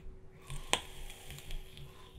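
A quiet draw on an e-cigarette with a dripping atomizer: faint crackle of the firing coil under the inhale, with one sharp click just before a second in.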